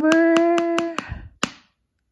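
A rapid run of sharp finger taps on a hard surface, about five a second, played as a mock drum roll under a woman's long held sung note; the note and the taps stop together about a second in, with one last tap half a second later.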